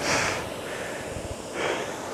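A rower's breathing close on a clip-on microphone: a sharp breath out at the start, then a second, softer breath about a second and a half later, over a steady faint rush of air.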